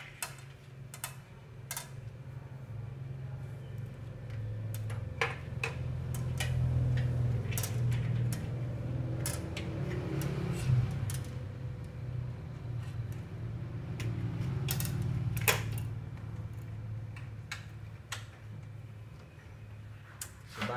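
Scattered light clicks and taps of fluorescent (CCFL) backlight tubes and their plastic end holders being handled in a TV's backlight frame, over a low steady hum that grows louder in the middle and fades toward the end.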